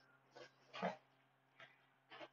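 Near silence with a faint steady electrical hum and two soft breaths into a close microphone, the second a little under a second in.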